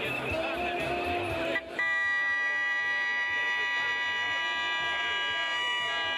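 Singing or music for the first second and a half, then a single long, steady horn blast that holds one unwavering note for about five seconds over the crowd.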